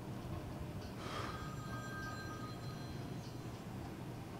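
Quiet indoor ambience with a steady low hum, and a faint brief breathy sound with a thin high tone about a second in.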